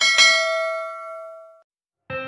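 A bell-chime notification sound effect: a bright ding struck at once, with a second strike a moment later, ringing on in a few clear tones and fading out by about a second and a half in.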